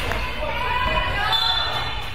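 A basketball being dribbled on a wooden gym floor, with several voices calling out over it.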